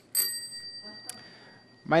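A bicycle bell struck once, its bright metallic ring holding several high tones and fading out over about a second and a half.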